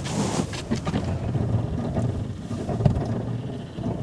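Rumbling noise from wind buffeting the microphone and handling of a moving camera, with scattered knocks over a steady low hum.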